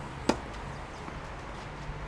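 A tennis racket striking the ball once, a sharp crack about a third of a second in, during a rally on a clay court.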